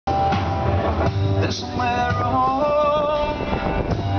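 Live rock band playing through a stage PA, with electric guitars and drums. About two seconds in, a melody of held notes steps up and then down.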